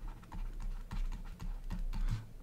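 Stylus tapping and scratching on a drawing tablet while words are handwritten: a run of irregular light clicks over a steady low hum.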